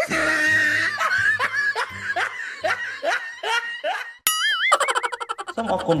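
Laughter in a run of rising bursts, about two a second, then a short wobbling cartoon boing effect about four seconds in, followed by a quick rattle and music starting near the end.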